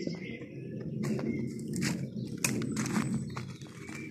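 Footsteps on leaf-strewn stone blocks: irregular crunches and scrapes of dry leaves and grit underfoot, starting about a second in.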